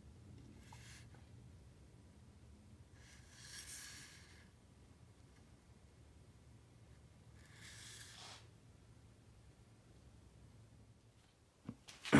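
Near silence: faint room tone with a low steady hum and two soft, brief rustles about four seconds apart.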